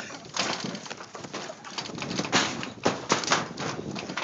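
Wrestlers' bodies and feet hitting a backyard trampoline's mat and shaking its frame and springs: an irregular run of thumps and rattles. The loudest hits come a little over two seconds in and around three seconds in.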